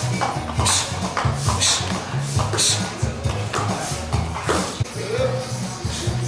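Background music with a bass line and a regular beat.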